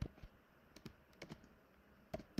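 Faint, scattered keystrokes on a computer keyboard: a handful of separate taps spread across the two seconds as code is typed.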